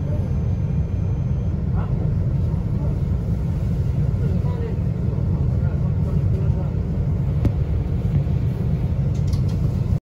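Metro train running along the track with a steady low rumble of wheels and running gear, heard from inside the front of the train. A single sharp click about seven and a half seconds in.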